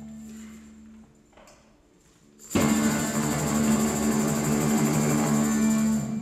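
Live band music: a soft held low note, then a near-quiet lull, then the full band comes in loud about two and a half seconds in and plays on.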